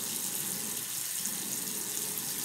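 Bathroom tap running steadily into a sink, a constant rushing hiss.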